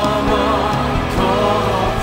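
Contemporary Christian worship song: a woman sings a sustained, wavering melody into a microphone over steady instrumental accompaniment.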